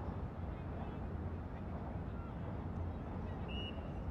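Outdoor ambience at a playing field: a steady low rumble, with faint scattered chirps and one short high tone about three and a half seconds in.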